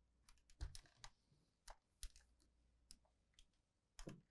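Scattered light clicks and taps as the iron and fabric are handled on the worktable. Two slightly firmer knocks come about half a second and two seconds in.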